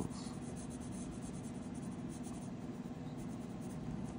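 Coloured pencil shading on paper, a soft, faint scratching, over a steady low background hum.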